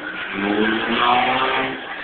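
Car engine revving hard, rising in pitch over about a second and a half, as the car spins its wheels in a smoky burnout.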